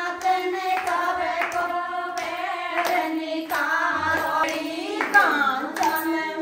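Singing with rhythmic hand clapping, roughly one clap every two-thirds of a second, keeping time with the song.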